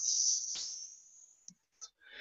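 A faint high hiss that fades away over about a second and a half, followed by two faint clicks.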